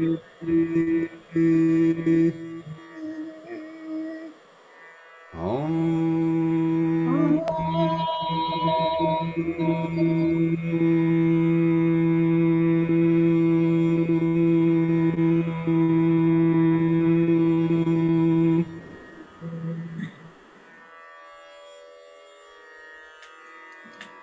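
Voices toning together in a group vocal exercise, holding long steady notes. After a brief stop about 4 to 5 seconds in, a long low tone is held for about 13 seconds, with another voice sliding up into pitch and higher notes joining above it; the toning ends about three-quarters of the way through.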